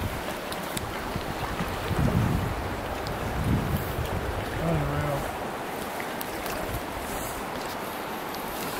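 Steady rush of fast-flowing creek water, with low gusts of wind buffeting the microphone about two and three and a half seconds in.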